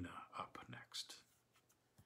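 A man's voice trailing off at the end of a sentence, followed by faint breaths and soft mouth noises for about a second, then near silence.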